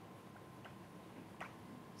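Chalk tapping on a blackboard as a diagram is drawn: a few faint, separate ticks over quiet room tone.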